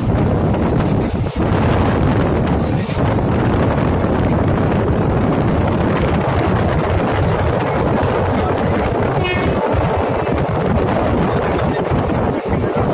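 Steady, loud running noise of a moving train, heard from on board, with a brief high-pitched tone about nine seconds in.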